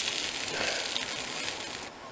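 Burgers sizzling on a wire grill over an open wood fire, a steady hiss that stops abruptly near the end.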